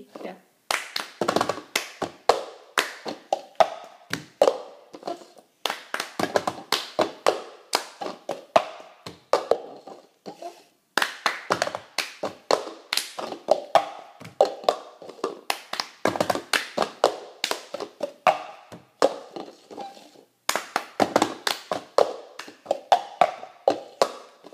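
Two players doing the cup game: a fast repeating rhythm of hand claps, taps on upturned disposable cups, and the cups being lifted and banged down on a stone countertop. It comes in several rounds with short breaks between them.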